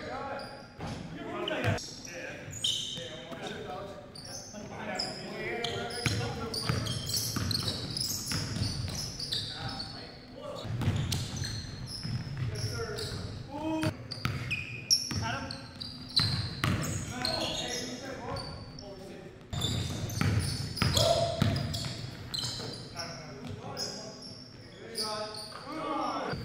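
Basketball game sounds in a gymnasium with a strong echo: a basketball bouncing and dribbling on the hardwood floor, sneakers squeaking in short high chirps, and players calling out indistinctly.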